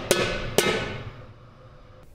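Sword striking a round Viking shield twice, about half a second apart; each clash is sharp and leaves a metallic ring that fades away over about a second.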